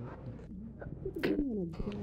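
A pause in conversation: faint room tone, then a short breathy click and a brief low 'hmm' from a person, falling in pitch, a little past halfway through.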